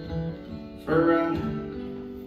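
Acoustic guitar playing the closing chords of a folk song live: a last chord strummed about a second in, left ringing and slowly fading out as the song ends.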